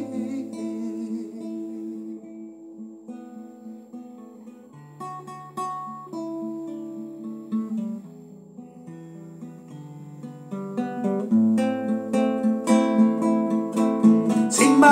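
Solo acoustic guitar playing an instrumental passage: soft picked notes and chords, growing louder with strumming in the last few seconds.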